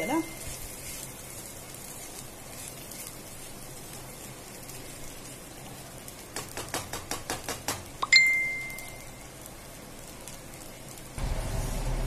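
Fried rice sizzling steadily in a pan as it is stirred. About six seconds in comes a quick run of spatula scrapes and taps against the pan, then one clink of the spatula on the pan that rings on briefly. Near the end the sound cuts to a louder low hum.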